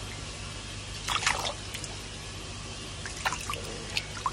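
Water splashing and dripping in a shallow basin as a goldfish is handled in it by hand, with a cluster of splashes about a second in and another after three seconds, over a steady background hiss.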